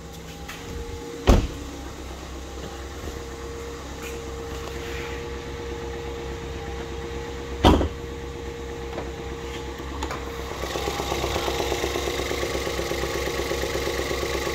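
2014 Ford Escape's 1.6-litre EcoBoost four-cylinder idling steadily with a faint whine, running smoothly with no knocks or ticks. Two sharp clunks, about a second in and near 8 s, come from the hood release and latch. From about 10 s the idle sounds louder and brighter as the hood is raised.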